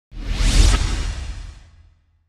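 Whoosh sound effect of a logo intro, with a heavy low end. It swells in quickly, peaks about half a second in and fades away over the next second.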